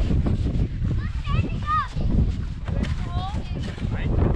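Short, high-pitched squeals and calls from children sledding, rising and falling in pitch, heard twice over a constant low rumbling noise.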